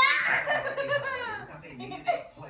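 A young child laughing and squealing while being tickled. The laugh bursts out loud and high at the start, then falls in pitch and fades over about a second.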